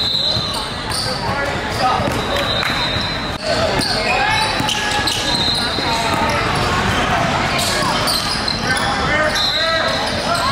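Basketball game sounds in a large gym: a ball being dribbled on the hardwood court, with short high sneaker squeaks and indistinct voices of players and spectators echoing in the hall.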